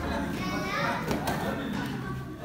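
Children's voices and chatter echoing in a large hall, with no single loud event standing out.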